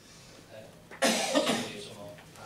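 A person coughing: a sudden loud cough about a second in, lasting under a second.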